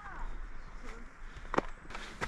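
A hiker's footsteps scrambling up bare rock slabs, with a sharp knock on the rock about one and a half seconds in, over a steady low rumble of wind on the microphone.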